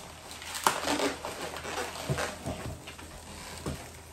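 Latex 350 modelling balloons being twisted and pinched into bubbles by hand: short rubbing squeaks of the latex, with one sharp click about half a second in.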